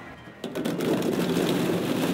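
Air blower of a ball-blowing play machine switching on about half a second in, with a steady rush of air and lightweight plastic balls clattering against the clear cylinder wall.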